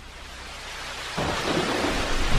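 Rain hissing steadily, with a low rumble of thunder breaking in a little over halfway through, growing louder.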